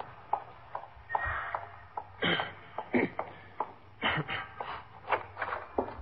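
Sound-effect footsteps walking at an even pace, about three steps a second.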